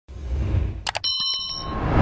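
Subscribe-button animation sound effects: a low rushing whoosh, a mouse click just before a second in, then a short, pulsing bell chime, followed by a swell of noise that builds to a hit at the end.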